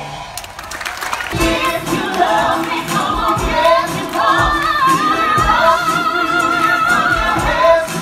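Live stage-show music with singing over a steady beat. Partway through, a voice holds one long, wavering note.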